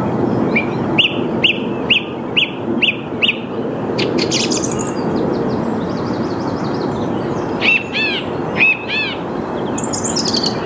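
Song thrush singing: one short note repeated six times, about two a second, then a brief high phrase, then another run of repeated notes near the end. A steady low background noise runs under the song.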